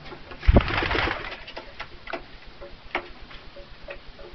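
Domestic pigeon cooing in short low notes, with scattered clicks. A loud knock and rustle come about half a second in.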